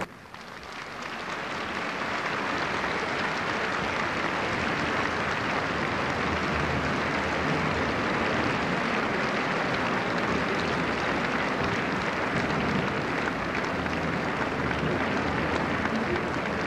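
Large theatre audience applauding. The clapping swells over the first two seconds and then holds steady as a dense wash.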